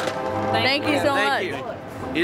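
Voices over background music with steady held notes.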